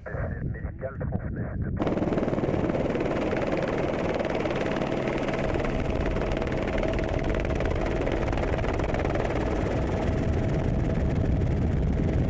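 Steady helicopter engine and rotor noise, as heard from aboard, with a constant hum through it; it comes in about two seconds in, after a few words.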